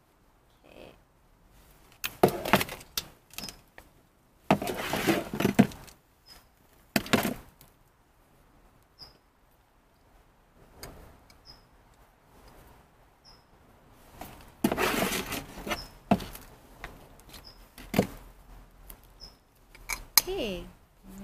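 Hands pressing and working loose potting mix into a ceramic pot around a plant's stem, rustling and scraping in irregular bursts with short pauses between, and faint short high chirps every second or two.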